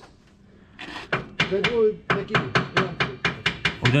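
A fast, even run of sharp taps or knocks, about five a second, starting about a second in and keeping on steadily.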